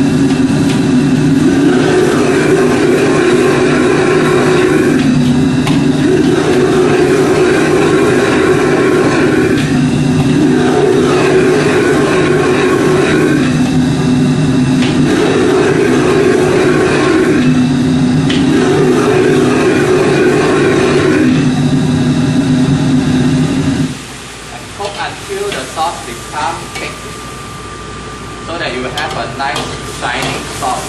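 Commercial gas wok burner running at full flame under a wok: a loud, steady roar that swells and dips every few seconds. About 24 seconds in, the burner is turned down and the roar cuts off suddenly, leaving scattered short sounds at a much lower level.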